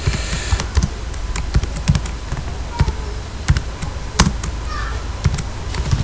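Computer keyboard keys tapped slowly and irregularly while a command is typed, a few dull keystrokes a second, one sharper stroke about four seconds in.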